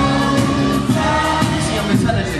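Live hip-hop band music with sung vocals holding long notes over the band.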